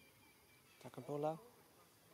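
One short vocal utterance, most like a person's voice, about a second in, over faint high chirping of insects.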